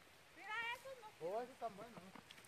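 A faint, high-pitched human voice at a distance, in two short stretches of talk or calling.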